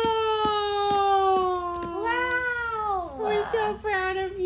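A toddler's long, high-pitched vocal sounds: a drawn-out vowel sliding slowly down, then a rising-and-falling call, then another held tone near the end.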